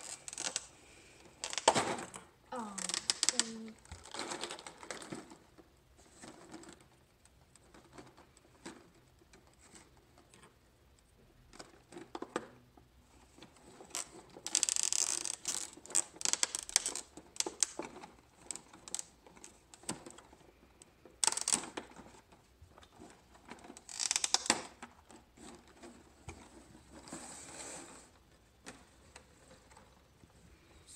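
Thin clear plastic blister packaging crinkling and crackling as mini football helmets are pried out of their moulded pockets, in irregular bursts with quieter pauses between, with small clicks and clacks of the plastic helmets.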